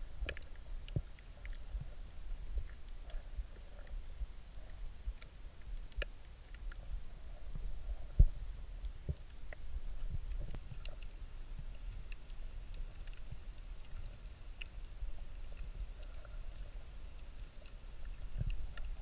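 Underwater sound picked up by a submerged action camera: a low, steady rumble with scattered faint clicks and ticks, and one sharper click about eight seconds in.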